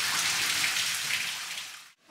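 Steady rush of water running through a watermill's wheel and race, a hiss that fades away near the end.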